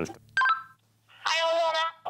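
Handheld two-way radio: a short electronic blip about half a second in, then a brief burst of a voice coming through its small speaker near the end.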